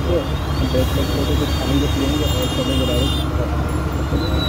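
Steady low engine and wind rumble of a ride through busy street traffic, with a person's voice over it and a few brief high tones.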